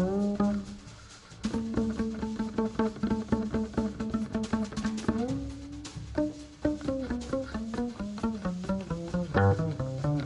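Upright double bass played pizzicato: a run of quick plucked jazz notes, with a brief pause about a second in and a few notes that slide upward near the middle.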